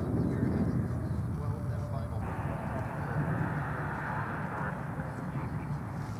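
A steady low outdoor rumble with faint, distant voices over it.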